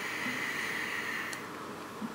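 Vape draw on a mechanical-mod e-cigarette: a steady hiss of air being pulled through the firing atomizer. It stops with a small click a little over a second in.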